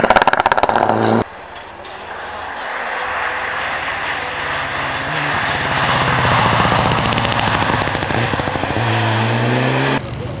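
A Mitsubishi Lancer Evolution rally car driven flat out. For about the first second the engine is at high revs with rapid crackling pulses. Then, after an abrupt change, the car approaches: its engine note rises and falls through the gears and grows louder, settling into a steady high-rev note near the end.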